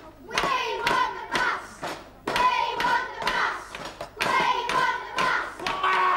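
A crowd of children chanting together and beating out a steady rhythm with their hands.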